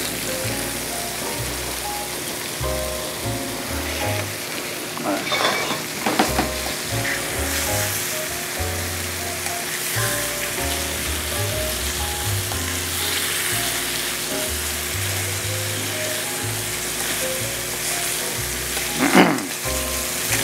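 Pork rib eye steaks sizzling steadily as they sear in hot oil in a frying pan, with a few clicks of metal tongs against the pan as the meat is moved. Background music with a low bass line plays underneath.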